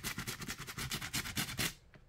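A bristle brush scrubbing quickly back and forth over a leather glove web that is lathered with cleaner, in quick, even strokes that stop just before the end.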